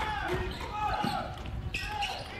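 A basketball being dribbled on a wooden court, several bounces, with voices calling out in the background.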